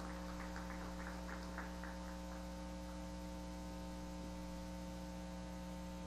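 Steady electrical mains hum, with a faint run of quick taps in the first two seconds that fade away.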